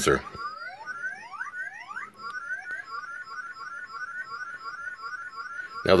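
A circuit-bent Playskool toy's sound chip, clocked by a 4017 decade-counter sequencer. It starts with a few upward-sweeping electronic chirps, then settles into a fast, steady repeating run of short rising bleeps.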